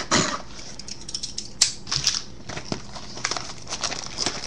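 Scissors cutting the plastic shrink wrap on a sealed box of trading cards, with crinkling wrap and scattered sharp clicks and snips. A scratchy burst comes right at the start.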